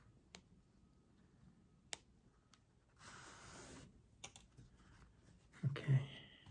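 Sashiko thread being pulled through fabric: a soft rasping hiss about three seconds in, lasting just under a second, with a few faint sharp clicks from handling the needle and fabric.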